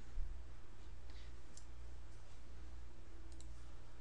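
A few faint, sparse computer mouse clicks over a steady low electrical hum.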